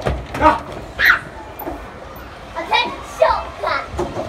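Children playing: excited high-pitched calls and squeals, one near the start, one about a second in, and a run of several in the second half.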